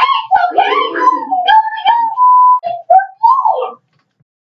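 A loud, high-pitched wailing cry, rising and falling in several broken stretches, with a short steady beep a little after two seconds in.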